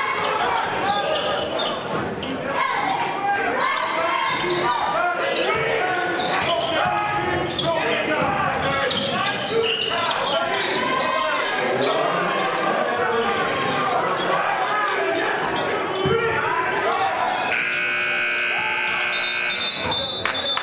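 Basketball dribbling and bouncing on a hardwood court in a large, echoing gym, with indistinct voices of players and spectators. Near the end an electric buzzer sounds steadily for about two seconds.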